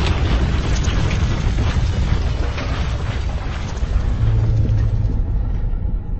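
Intro sound-design effect of a deep, continuous rumble with crackling like breaking stone, its crackle thinning out near the end.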